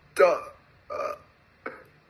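A person's voice making three short wordless sounds about half a second to a second apart, hesitating before answering a question.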